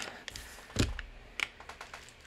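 Plastic-wrapped package of paper clay handled: its wrapper clicks and rustles in the hands, with a soft thump a little under a second in as it is set down on a craft mat, then a few light taps.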